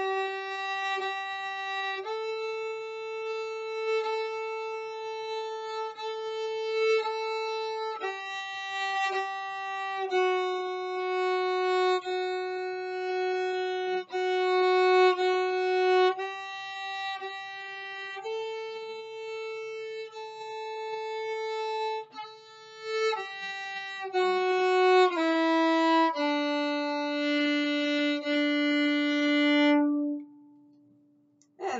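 Solo violin bowed slowly in long, even notes, stepping among F sharp, G and A and repeating the A. The A is played alternately with the fourth finger and on the open string, so that the two should sound the same. Near the end the line steps down through G, F sharp and E to a long low D.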